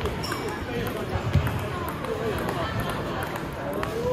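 Table tennis rally: the ball ticking sharply off the paddles and table, over a steady babble of voices in a large gym hall, with one louder low thump about a second and a half in.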